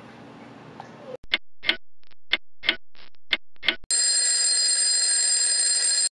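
Stopwatch sound effect: about seven ticks, roughly three a second, then a loud alarm bell ringing steadily for the last two seconds, marking time passing.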